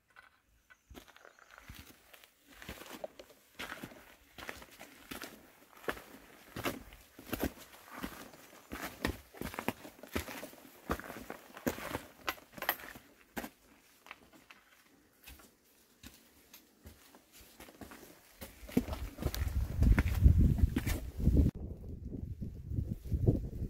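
A hiker's footsteps on a rocky dirt trail, irregular steps about one to two a second. Near the end a louder low rumble comes in.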